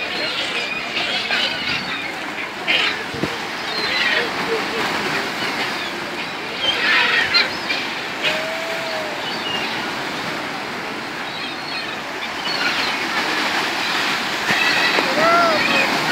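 Steady splashing and wing-flapping of a dense flock of pelicans and gulls crowding and scrambling on the water in a feeding frenzy, with two short arching calls standing out, about halfway through and near the end.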